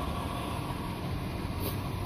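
Outdoor air-conditioning condensing units running nearby: a steady low hum with a faint, steady whine over it.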